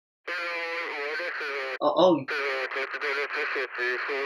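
A caller's voice on the other end of a phone call, thin and band-limited like a voice heard through a phone or radio, talking in two stretches with no words the recogniser could make out. Between them a boy says "oh, oh" once.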